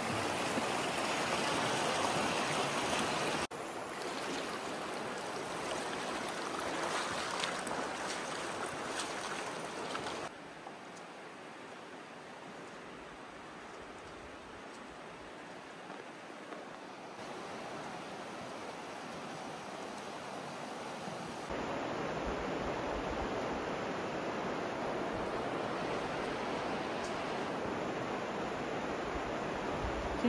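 Virgin River rushing over the rocks of a shallow canyon riverbed, a steady rush of water. It steps down in loudness about ten seconds in and back up a little past twenty seconds.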